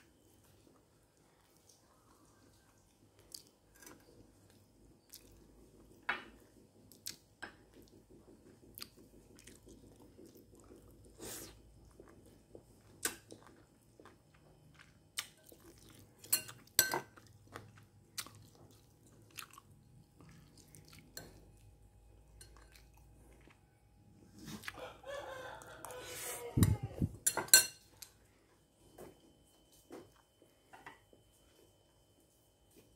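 Close-up chewing and biting of stir-fried pork intestines and rice, with sharp clicks of a metal spoon and chopsticks against ceramic bowls scattered throughout. Near the end, a louder sound of about three seconds that falls in pitch.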